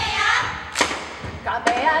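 Steady percussion beats accompanying a chanted Hawaiian mele for hula, one strike about every 0.85 s, with a chanting voice returning near the end. A brief noisy rush fills the first half second.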